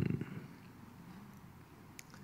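A man's low voice trailing off in the first half second, then faint room tone.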